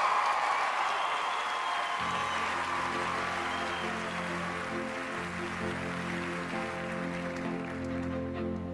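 Audience applause and cheering fading away as a soft instrumental introduction enters about two seconds in with long sustained chords.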